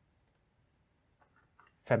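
Two faint, quick computer mouse clicks in close succession about a quarter second in; otherwise near silence until a man's voice starts again at the very end.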